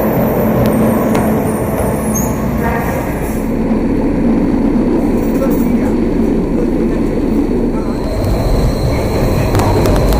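Underground SEPTA trolley running through the tunnel: a steady, loud rumble of wheels on rails with a motor hum, and brief high squeals about two seconds in.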